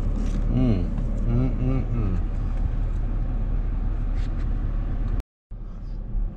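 Steady low hum inside a parked car with the engine running, with a few brief words of speech in the first two seconds. The sound drops out suddenly for a moment about five seconds in.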